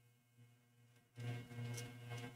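Near silence for about a second, then a faint, steady low hum sets in.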